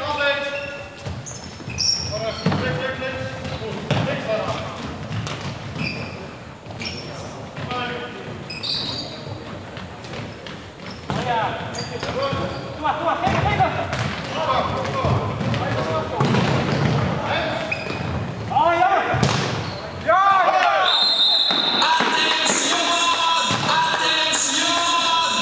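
Indoor futsal play in an echoing sports hall: the ball knocking and bouncing on the wooden floor among players' shouts. Music comes in about 20 seconds in.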